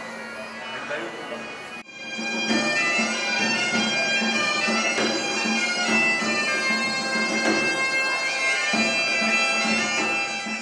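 Bagpipe music: a steady drone under a running melody, becoming much louder about two seconds in.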